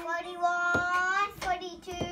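A young child's voice counting numbers aloud in a drawn-out, sing-song way: two long held words, with a few light taps of a wooden pointer stick on the wall chart.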